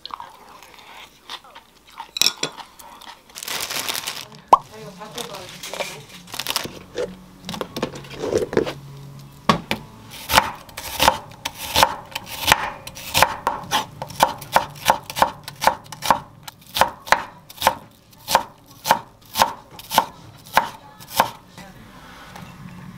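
Kitchen knife chopping an onion on a wooden cutting board: sharp, regular knocks about two a second that quicken toward the end as the onion is minced fine. Before that, a few scattered knocks and rustles.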